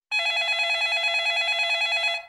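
Telephone ringing: a single electronic ring with a fast warble, lasting about two seconds.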